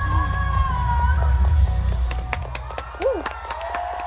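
A female singer holds a long high final note over a live band, letting it fall just under a second in, and the band stops about two seconds in. The concert crowd then cheers and applauds, with sharp hand claps and a brief whoop.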